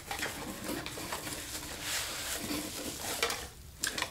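Bubble wrap crinkling and rustling as a bubble-wrapped glass bottle is pulled out of a cardboard box, dying away shortly before the end.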